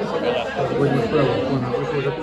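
Overlapping conversation: several people talking in a busy café, with no other clear sound standing out.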